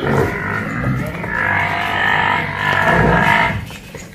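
Water buffalo bellowing: one long call lasting about three and a half seconds, then stopping.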